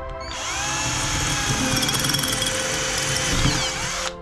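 Cordless drill boring a hole through the base of a bonsai pot. The motor spins up about a third of a second in, runs steadily, and stops abruptly at the end, with soft background music underneath.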